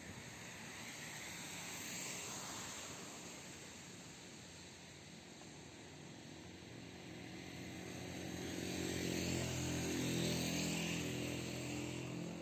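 Motor vehicles passing on a wet road: tyre hiss swells briefly about two seconds in, then a louder pass with engine hum builds from about seven seconds and peaks near ten seconds.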